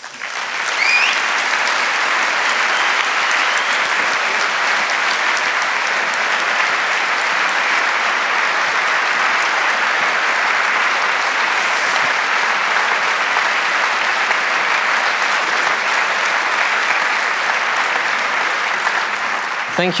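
Audience applauding steadily for about twenty seconds at the end of a lecture, with a short rising whistle about a second in.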